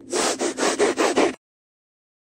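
A harsh, scratchy rasp in about five quick pulses, lasting just over a second and cutting off abruptly.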